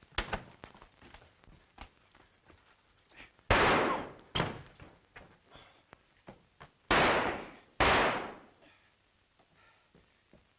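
Two pairs of loud, sharp bangs, the first pair about three and a half seconds in and the second near seven seconds, each ringing off briefly, with lighter knocks and clicks between them.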